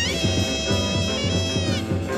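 Live free jazz: a high, nasal wind instrument wails a held note that slides up at the start and bends down near the end, over a pulsing bass and drums.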